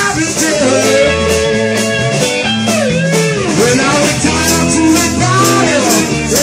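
Live blues-rock band playing: electric guitar, bass and drums, with a harmonica playing sustained and bending notes, and a tambourine shaken in time with the beat.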